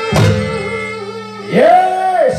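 Live Javanese gamelan music accompanying a gandrung dance. A sharp drum stroke comes just after the start, and a voice slides up into one long held note near the end.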